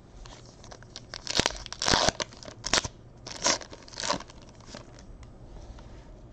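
Stiff baseball cards sliding and scraping against each other as a stack is handled, a quick series of about five or six short swipes, loudest about two seconds in.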